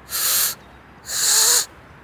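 A blade of grass stretched between the thumbs, blown through the cupped hands twice: each blow is mostly a breathy rush of air, and the second catches a faint wavering squeak. The blade is nearly, but not quite, sounding its full whistle.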